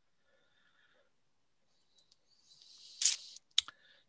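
Near silence for over two seconds, then a short hiss that swells and stops, followed by two sharp clicks just before speech begins.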